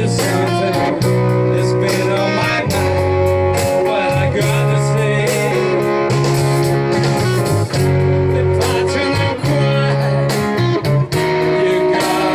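Live band playing amplified music, led by electric guitar over a moving bass line and drums.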